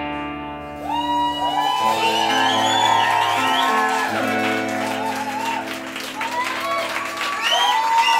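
A rock band's final chord on electric guitars and bass ringing out and fading, while about a second in the audience starts cheering, shouting and clapping.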